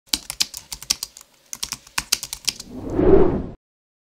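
Logo-intro sound effect of rapid computer-keyboard typing, a quick run of keystrokes with a brief pause in the middle, followed by a rising swell of noise that cuts off suddenly.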